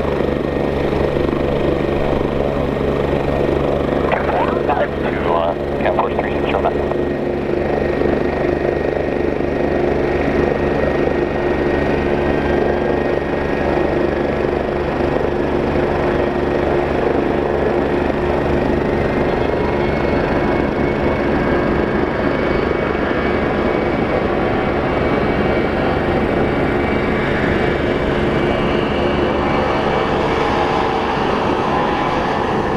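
Four Pratt & Whitney F117-PW-100 turbofans of a C-17A Globemaster III running at high power on the takeoff roll: a loud, steady jet roar with a faint whine that climbs slightly about twenty seconds in.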